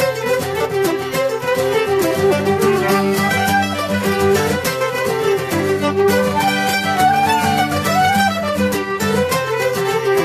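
Several fiddles playing a traditional fiddle tune together, backed by strummed acoustic guitars keeping a steady, even beat.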